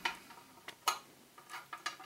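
A few light, sharp clicks and taps of a laptop solid state drive being handled against its thin sheet-metal drive caddy, the loudest just under a second in and another near the end.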